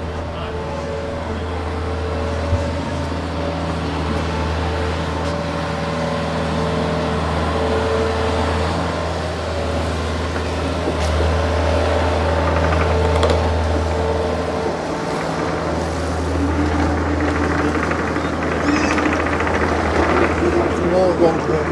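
An engine running steadily: a low drone with a few held tones above it that shift slightly now and then, over general street noise.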